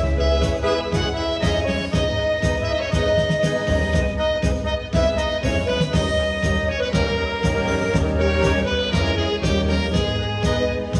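Live dance-band music playing a tango with a steady beat, an accordion carrying the melody in an instrumental passage without singing.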